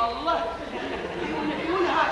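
Speech only: actors' voices talking on stage.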